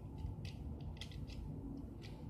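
A few faint, light clicks of plastic Beyblade parts being handled, over a low steady background hum.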